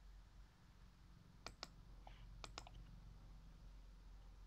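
Near silence with a few faint clicks at a computer, in two quick pairs about a second apart.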